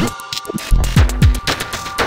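Theme music with deep, quickly falling bass-drum hits under a steady held tone. The music thins out briefly at the start, then the hits come back about three times.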